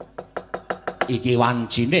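Fast run of wooden knocks, about six a second, from a wayang kulit dalang's cempala rapped on the puppet chest; the knocking stops about a second in, when a man's drawn-out vocal hum takes over.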